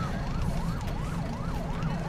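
Police siren in a fast yelp, its pitch sweeping up and down about three times a second, over a low rumble.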